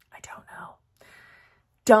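A woman's soft, whispery vocal sounds: a quiet murmur early on and then a breath, before her full speaking voice comes back in near the end.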